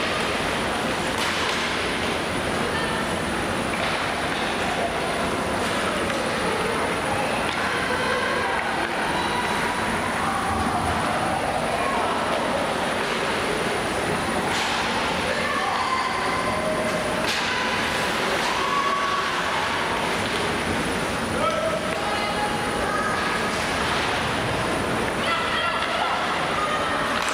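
Ice hockey game sound in a near-empty rink: a steady wash of rink noise under scattered short shouts and calls from players, with a few sharp knocks along the way.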